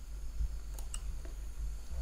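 Steady low background hum with a few faint computer-mouse clicks, one about a second in and another near the end.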